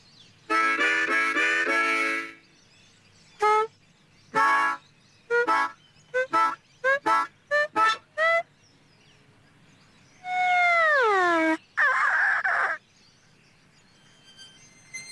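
Harmonica played in separate bursts: a few quick chords, then a run of about a dozen short, stabbed single notes, then a long note that slides down about an octave, and a final short chord near the end.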